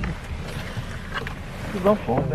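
Steady low rumble of a car cabin, with faint rustles and clicks from the handheld camera rubbing against clothing and the seat. A short burst of voice comes near the end.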